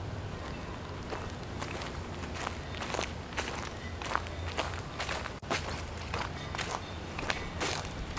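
Footsteps crunching through dry fallen leaves, about two steps a second, as someone walks across a yard.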